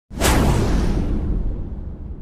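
A whoosh sound effect for a logo intro: it comes in suddenly with a low rumble underneath and fades away over about a second and a half.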